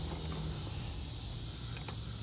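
A steady, high-pitched chorus of insects shrilling without a break, over a low steady hum, with a couple of faint ticks.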